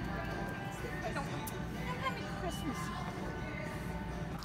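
A person singing a Christmas song over a grocery store's public-address loudspeaker, the held and gliding notes carrying through the store.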